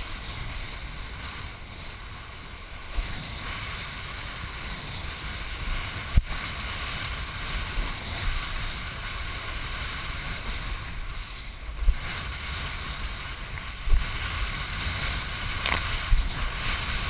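Wind buffeting a head-mounted GoPro camera and water rushing under a kiteboard as it rides through choppy surf, with a few sharp knocks as the board hits the chop.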